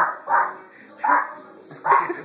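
Small dog barking repeatedly, four short barks in about two seconds.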